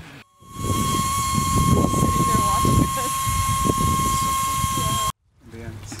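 Compressed helium hissing steadily from a gas cylinder into a high-altitude weather balloon, with a thin steady whistle over the hiss. The sound starts and stops abruptly, with a low wind rumble and a few voices underneath.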